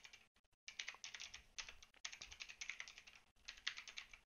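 Faint typing on a computer keyboard: quick runs of keystrokes broken by short pauses.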